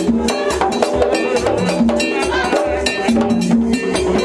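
Haitian Vodou ceremony drums playing a fast, dense dance rhythm, with held pitched notes over the beat.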